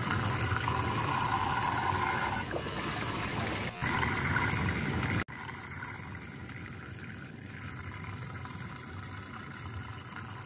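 Water swirling and rushing down a whirlpool vortex, loud and churning, cutting off suddenly about five seconds in. It gives way to a quieter, steady sound of flowing river water.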